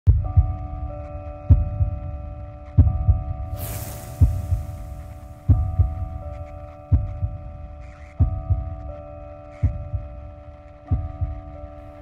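Soundtrack music under title cards: a sustained droning chord over a low double thump repeating about every second and a half, like a slow heartbeat, nine beats in all. A hissing whoosh swells and fades about three and a half seconds in.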